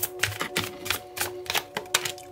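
Tarot cards being shuffled and dealt onto a table by hand: a quick, irregular run of crisp card clicks and snaps.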